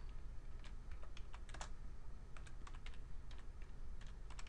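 Typing on a computer keyboard: a run of irregular key clicks as a short word is keyed in.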